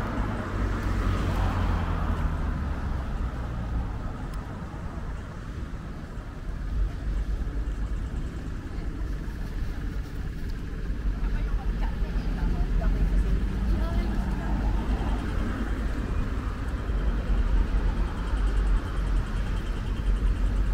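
Road traffic at a city intersection: cars and other vehicles passing, heard as a steady low rumble that grows louder in the second half.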